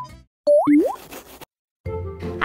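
A playful cartoon sound effect: two quick pops, each a short tone that glides sharply upward, about half a second in. A moment of silence follows, then intro music starts near the end.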